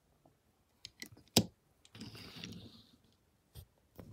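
Handling noise from a diecast model car: a few small clicks, a sharp tap about a second and a half in, then a brief soft scraping rustle as the car is moved and set down on a table, and one more click near the end.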